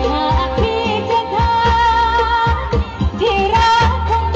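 A female lead voice singing a Thai song over a band, with long, wavering held notes and a steady drum beat.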